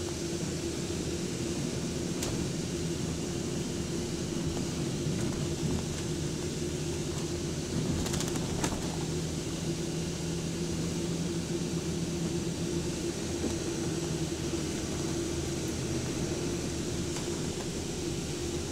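Double-decker bus in motion heard from its upper deck: a steady engine hum over road noise, with a few sharp clicks about eight seconds in.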